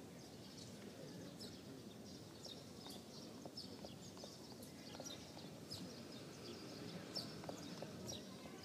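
Faint outdoor ambience: a low, steady background with scattered short, high chirps and clicks throughout.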